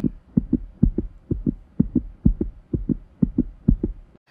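Heartbeat sound effect: fast lub-dub double thumps, about two beats a second.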